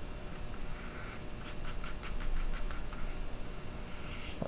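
Small paintbrush working acrylic paint onto bristle paper: soft, scratchy brush strokes, with a quick run of short dabs in the middle.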